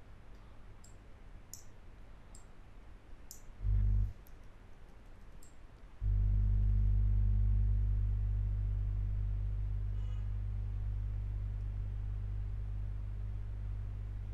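A few sparse computer mouse clicks, then a steady low hum that comes in briefly about four seconds in and again from about six seconds on, louder than the clicks.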